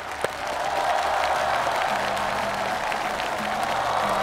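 Studio audience applause that builds about half a second in and then holds steady, with background music playing underneath.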